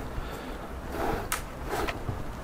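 Leather lace being pulled through the calf-leather lace tab at the back of a boot: a soft rubbing slide, with a brief scrape a little over a second in.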